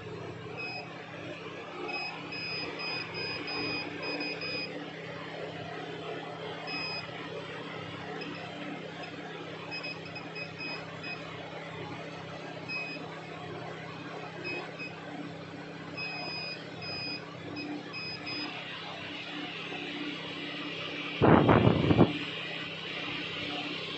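Short, high electronic beeps sounding on and off in irregular runs over a steady low hum, then a brief loud clatter near the end.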